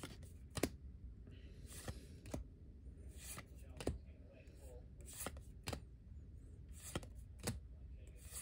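Weiss Schwarz trading cards being flicked through one at a time in the hand: a short, sharp snap each time a card is slid off the stack, about one or two a second, sometimes in quick pairs.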